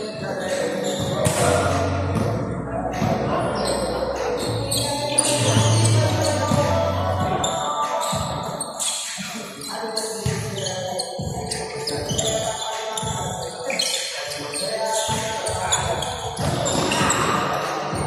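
A basketball being dribbled and bounced on a hardwood gym floor during a game, with players' voices, all echoing in a large hall.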